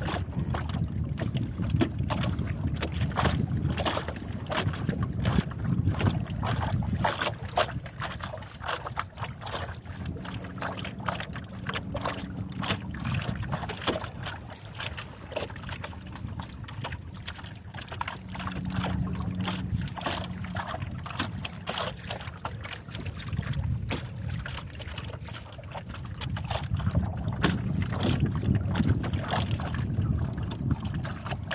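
Water lapping and slapping against the hull of a small sailing dinghy under way, a constant patter of short splashes, with wind rumbling on the microphone.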